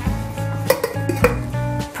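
A stainless steel lid set onto a large steel stock pan, clinking twice, about a third of the way in and again just past halfway, over background music.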